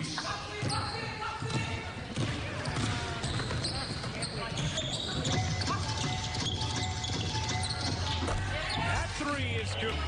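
Game sounds of live basketball in an arena with no crowd: the ball bouncing on the hardwood, shoes squeaking and players' voices calling out, over piped-in background music.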